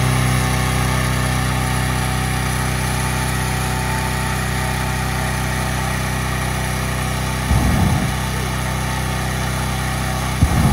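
Petrol-engine balloon inflator fan running steadily at full speed, blowing cold air into a hot air balloon envelope during cold inflation. A brief low rumble breaks in about seven and a half seconds in.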